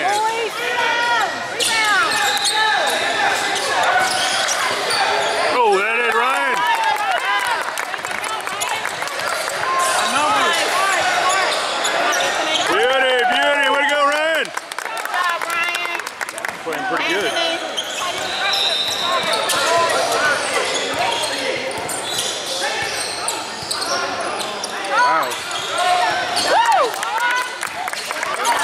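A basketball game on a hardwood gym court: a basketball bouncing, sneakers squeaking in many short chirps as players cut and stop, and players' and spectators' voices in a large, echoing gym.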